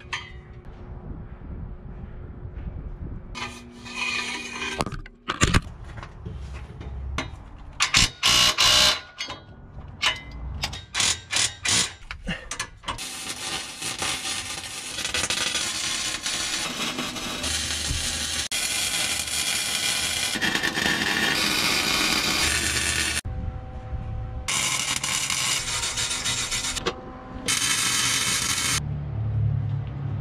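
Metalwork on a stainless steel exhaust system under a pickup truck. A string of short separate bursts of tool noise gives way to long stretches of steady crackling hiss from welding the pipe joints.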